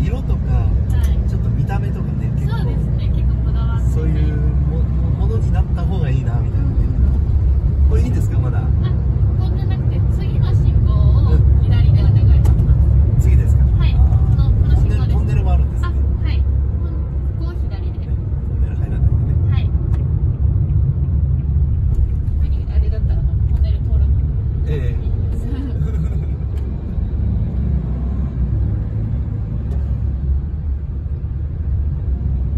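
Cabin noise of a Toyota HiAce van driving in town traffic: a steady low road and engine rumble, heard from inside.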